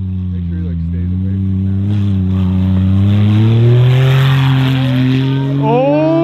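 Lifted Smart Car's small engine revving hard under throttle, its pitch climbing slowly and then holding as it gets louder. A hiss of snow thrown up by the spinning tyres builds through the middle. Voices start near the end.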